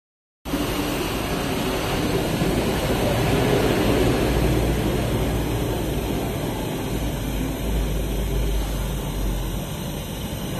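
Richpeace RP-3A mattress tape edge machine running steadily, its sewing head stitching tape along the mattress edge, over a low machinery hum. The noise starts abruptly about half a second in.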